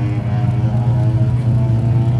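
Car engine running at a steady idle, a constant low drone.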